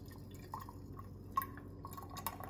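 A thin stream of creamy liquid pouring into a stainless steel funnel, heard as a few small drips and plops, one sharper than the rest near the middle, over a faint steady low hum.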